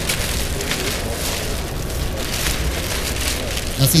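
Release liner being peeled off the pressure-sensitive adhesive of a self-adhered TPO roofing membrane, giving an irregular crackling, papery ripping, over steady background noise.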